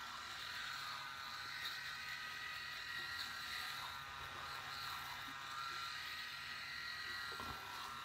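Phisco RMS8112 three-head rotary electric shaver running steadily as it is drawn over a foam-covered face: an even motor whine with a low hum underneath.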